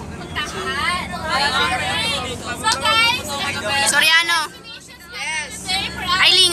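Young people's voices chattering close by inside a bus, over the steady low hum of the bus's engine.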